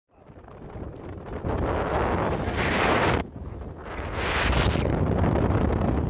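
Wind buffeting the microphone in two gusts: the first builds up and cuts off suddenly about three seconds in, and the second swells straight after and holds.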